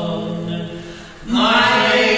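Unaccompanied group singing in harmony: a held chord fades out a little after a second in, and the voices come back in louder on the next line.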